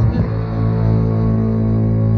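Live rock band music: about a quarter second in, the band settles onto one sustained chord that rings on steadily, heavy in the bass.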